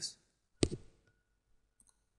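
A single sharp click of a computer key being pressed about half a second in, then a few faint clicks near the end.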